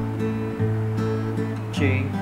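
Cutaway acoustic guitar strummed in a steady rhythm, ringing an A chord that changes to G near the end.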